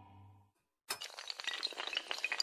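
A low musical drone fades away, and after a short silence a sound effect of glassy clinking and shattering breaks in suddenly about a second in: a dense, continuing clatter of many small sharp impacts with bright pings.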